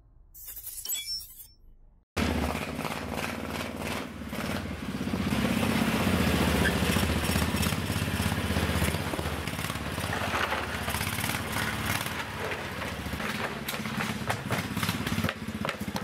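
A faint sound under a short logo intro, then near silence, and from about two seconds in a PROMAX SRX 700 snowmobile engine running steadily. It gets louder about five seconds in and drops away near the end.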